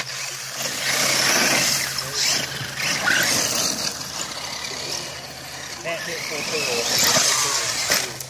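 Radio-controlled trucks driving hard over gravel and dry leaves, their tyres spinning and throwing up debris, with the trucks tumbling and crashing.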